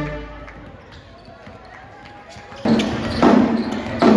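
A high-school pep band's brass music ends just after the start, leaving a lull of gym crowd noise. About two-thirds of the way in, loud sudden hits begin, repeating at under a second apart.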